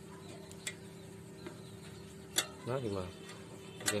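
A few sharp metallic clicks from hands handling an overlock machine's needle and presser-foot mechanism, a faint pair about half a second in and a stronger one a little after two seconds, over a steady low hum.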